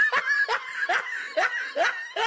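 A man chuckling softly: a run of short, breathy laughs, about two a second.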